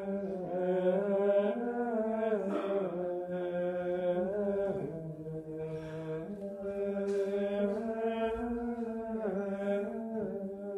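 Unaccompanied Latin liturgical plainchant of the Tridentine Mass, sung as a single melodic line. Long held notes move in small steps up and down.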